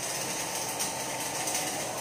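Steel wire brush scrubbing the weld bead of a welded steel pipe joint, a raspy scraping that cleans slag and spatter off the finished weld, over steady workshop machine noise.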